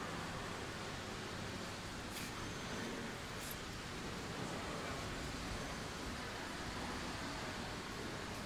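Steady background noise of a large indoor hall, an even hiss with no engine or voices standing out, broken by a couple of faint clicks about two and three and a half seconds in.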